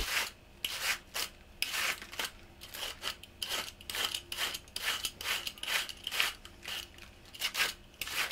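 A metal Y-peeler shaving a cabbage wedge into fine shreds, with rasping cutting strokes about two a second.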